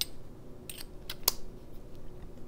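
A handful of small sharp clicks from a vape atomizer being handled and adjusted by hand, the loudest about a second and a quarter in.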